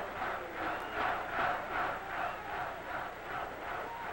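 Stadium crowd cheering and shouting, a steady mass of voices.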